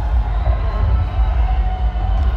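Loud amplified music with heavy bass from a festival stage sound system, heard from far back in the stands, with crowd noise beneath it.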